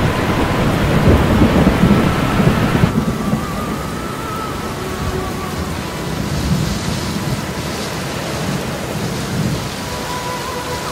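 Heavy rain with rolling thunder. The thunder rumbles loudest in the first three seconds and eases about three seconds in, leaving a steady hiss of rain.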